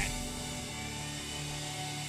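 Sustained keyboard chord held softly, with no rhythm, as a pad behind a pause in the preaching.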